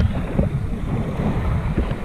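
Wind buffeting the camera's microphone as a steady low rumble, with sea water washing at the shoreline.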